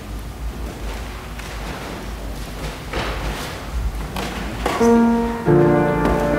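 Low room rumble with a few faint knocks, then a piano starts playing near the end: a first held chord, then a fuller one about half a second later.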